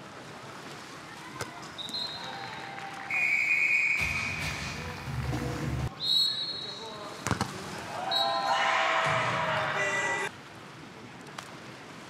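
Referee whistles at a water polo match: several short blasts and one longer, lower blast, over arena noise. A few sharp knocks, and a burst of shouting voices that cuts off suddenly about two-thirds of the way through.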